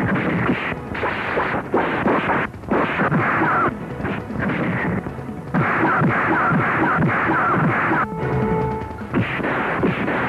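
Soundtrack of an old film fight scene: a dense, noisy mix of dubbed hit and struggle sound effects, broken by several short gaps. A brief held musical note sounds about eight seconds in.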